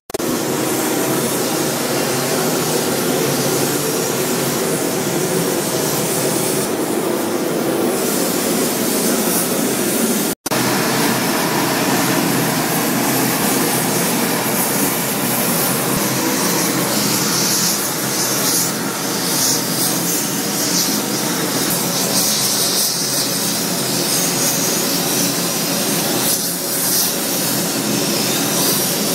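Gas torch flame running with a steady, loud hiss as it heats metal parts, the sound breaking off for an instant about ten seconds in and picking up again with more high hiss in the later part.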